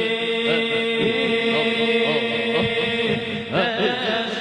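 Arabic devotional song (qasida) sung in a chanting style, the voice's line curling up and down in ornaments over a steady held drone note. The drone drops out just before the end as a new sung phrase begins.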